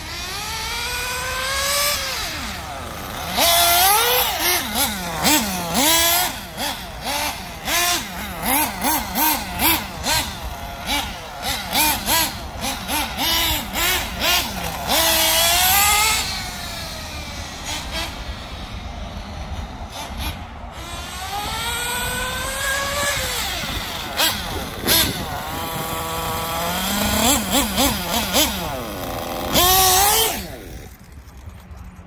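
Nitro glow engine of a Serpent RC buggy revving hard as it is driven: rising whines on full throttle and many quick throttle blips, its loudness swelling and fading. It is running on a freshly fitted Reds Racing turbo glow plug.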